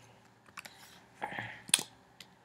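A few light clicks of computer keys or buttons, spaced unevenly, with the sharpest one near the end, as the presenter switches the drawing tool and advances the slide.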